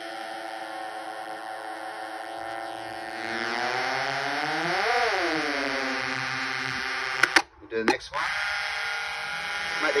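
Homemade drone synth of transistor oscillators, several buzzing tones held together through its small built-in speaker, like a box of bees. About halfway the pitches slide together and apart again as a tune knob is turned. Near three-quarters through the sound cuts out briefly with a few clicks, then the tones come back.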